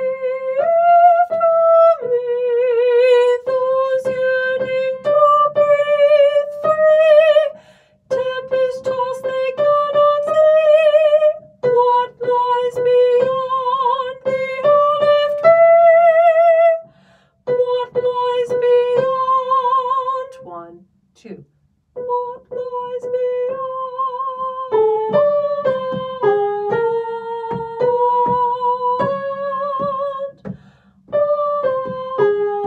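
A single soprano voice singing a slow line of held notes with wide vibrato, with short breaks for breath between phrases.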